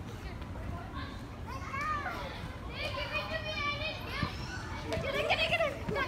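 Young child's high-pitched wordless vocalizing: about three short bursts of calls and squeals, over a steady low rumble.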